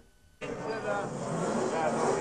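Race-paddock ambience that starts abruptly about half a second in, after a brief near-silent gap: a steady din of motorcycle engines mixed with voices.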